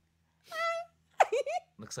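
A person's voice: a short, high, held vocal sound about half a second in, then a brief sound that rises and falls in pitch, with speech starting at the very end.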